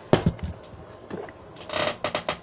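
A drinking glass set down on a hard surface with a sharp knock just after the start and a couple of lighter knocks, then a burst of clothing rustling close to the microphone near the end.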